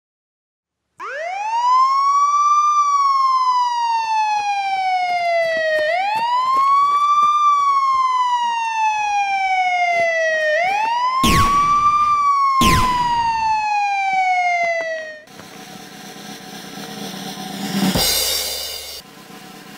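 Police-style siren wail, rising quickly and falling slowly three times in a row. Two sharp bangs cut through it near the third cycle. Near the end the siren stops and quieter drum music begins.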